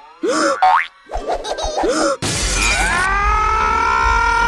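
Cartoon sound effects: a few springy boings and a quick rising whistle glide in the first half. A loud burst of hiss follows about halfway through, then sustained tones that rise and then hold steady.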